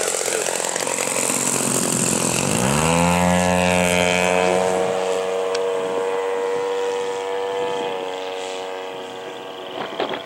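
Hangar 9 Sukhoi RC plane's 85cc gas engine and propeller, opened up about two and a half seconds in so the pitch sweeps up to a steady high note. The sound fades in the last couple of seconds as the plane climbs away.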